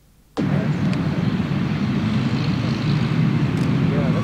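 A steady low rumble of background noise on an old field recording, picking up suddenly after a brief silent gap at the very start, with faint voices in it.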